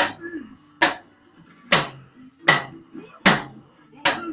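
Small toy drum kit struck with drumsticks by a toddler: five single hits at a slow, fairly even pace, a little under a second apart.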